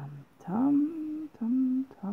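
A woman humming without words: two held notes, the second a little lower than the first.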